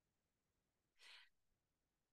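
Near silence, broken about a second in by one short, faint breath drawn by the podcast host between sentences.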